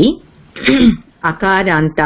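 A person clearing their throat about half a second in, then going on speaking.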